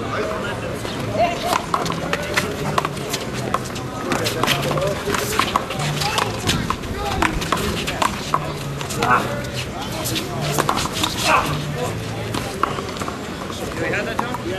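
One-wall handball rally: a run of sharp, irregular slaps as the small rubber ball is struck by hand and hits the concrete wall and ground, with shoe scuffs and crowd voices around it.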